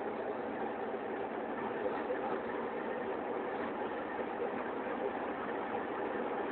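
Inside a BMW's cabin at highway speed, about 150–160 km/h with the engine near 3,000 rpm and gently gaining speed: a steady rush of engine, tyre and wind noise with no distinct events.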